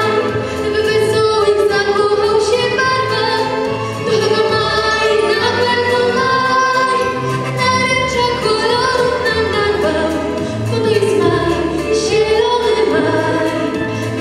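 A young vocal group of girls and boys singing a song together into microphones, with a steady bass line under the voices.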